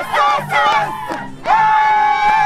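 High-pitched voices of the dancers singing and shouting over carnival band music with a steady beat. One long held cry starts about three-quarters of the way through.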